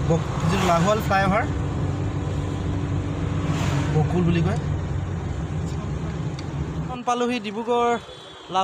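Steady low drone of a car's engine and tyres heard from inside the cabin while driving. It cuts off suddenly about seven seconds in, and a man's voice follows.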